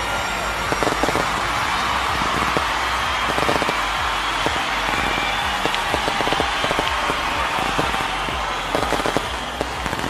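A large crowd applauding: a dense, steady crackle of many hand claps over a hiss.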